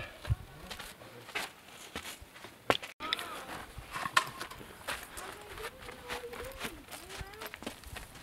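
Footsteps and scuffs on gritty desert ground, with scattered small knocks and clicks; the sound drops out for an instant about three seconds in.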